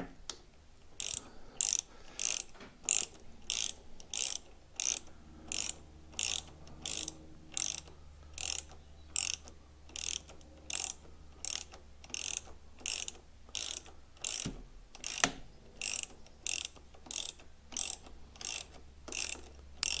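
A hand ratchet being worked back and forth to tighten motorcycle handlebar clamp bolts, giving a short run of pawl clicks on each return stroke, about one and a half strokes a second. There are a couple of duller knocks about halfway through.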